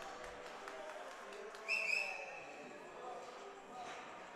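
Faint hockey-rink ambience with distant voices. Just under two seconds in, a brief high-pitched tone sounds for about half a second, falling slightly in pitch.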